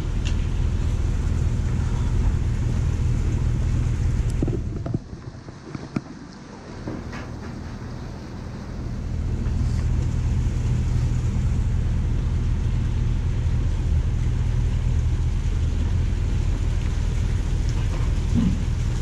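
A steady low motor hum that drops away for a few seconds in the middle, with a few clicks, and then returns.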